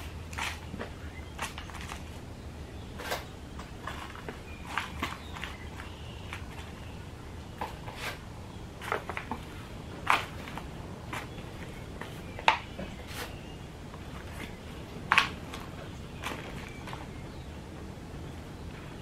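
Small plastic plant pots being filled by hand with potting soil, shaken and set down: scattered soft rustles and plastic knocks at irregular intervals, with a few sharper knocks standing out.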